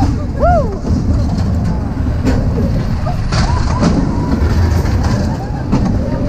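Spinning mouse-coaster car running along its steel track: a steady, heavy rumble from the wheels, with scattered sharp clicks and knocks. A short rising-and-falling squeal comes about half a second in.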